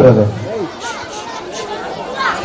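A man speaking into a microphone over a PA for about half a second, then a pause filled with faint background chatter of voices.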